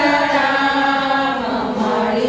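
Group of women chanting a devotional song together in unison, long held notes, with the pitch sliding down near the end.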